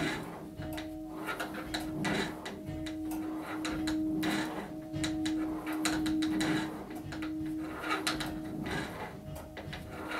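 Church tower bell being rung up, its clapper striking both sides of the bell on each swing ('doubling'), which happens about a third of the way up. Repeated strikes, with the bell's note ringing on steadily between them.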